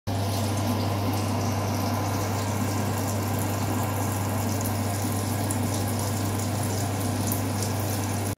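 Electric hair dryer running steadily: a continuous rush of blown air over a low motor hum.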